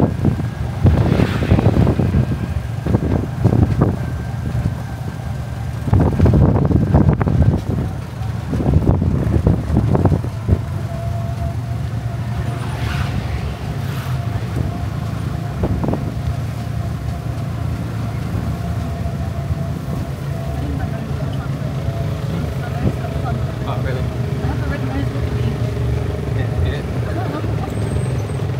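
Ride inside an open-sided electric tricycle (e-trike): a steady low road rumble with a faint steady whine from the motor, and gusts of wind noise on the microphone in the first ten seconds.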